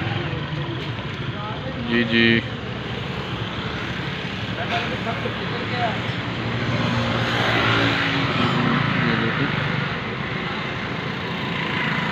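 A steady din of engines and traffic, with people's voices mixed in and a short spoken reply about two seconds in.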